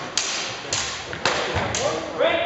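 Weapons striking in a fast fencing exchange: four sharp hits about half a second apart, each followed by a short noisy rattle.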